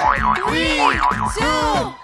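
Cartoon-style boing sound effect, a fast wobbling tone near the start, over show music and excited shouting voices as a game timer runs out.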